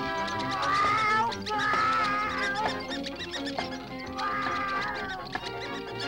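Cartoon orchestral score playing throughout, with a cartoon cat's voice crying out over it three times in wavering cries: about half a second in, around two seconds, and between four and five seconds.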